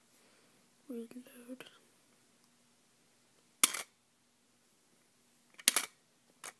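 A voice says one word, then two short, loud puffs of breath hit the microphone about two seconds apart, over a faint steady hum.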